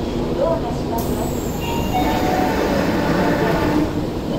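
Doors of a Tokyo Metro 05 series train and the platform screen doors closing, with a sudden hiss about a second in.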